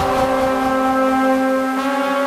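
Electronic dance music intro: a loud, sustained horn-like synth chord held steady, opening with a sharp hit.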